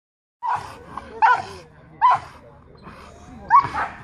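Pit bull barking: four short, sharp barks spaced roughly three-quarters of a second apart, the last the loudest.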